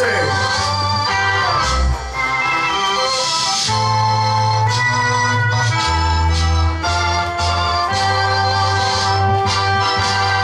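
Music played by the DJ: held chords over a bass line that changes note every second or two.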